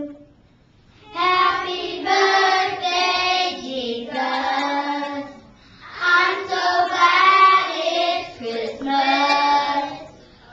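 Children singing together, starting about a second in, in sung phrases with a short break about halfway through.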